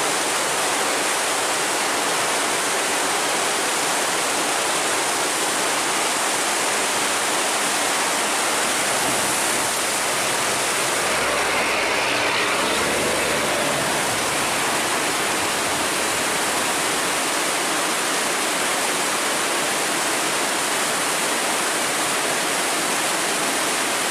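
Steady rush of fast, turbulent river water: a strong current pouring through an open sluice gate and churning around the passing boats.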